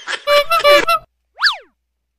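Cartoon comedy sound effects: two short pitched notes, then a quick whistle-like glide that shoots up and drops back down, then silence.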